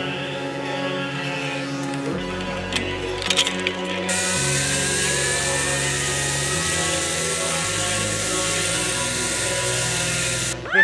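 Background music throughout. From about four seconds in, a zip-line trolley's pulleys run along the steel cable with a rushing whir whose pitch rises slowly.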